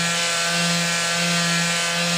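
Rapid Release Technology handheld soft-tissue vibration device running with a steady electric buzz as its head is worked in slow circles over a towel on the shin.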